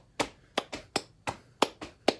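Hand claps in a quick, even rhythm, about three a second: a practice rhythm clapped at a fast tempo.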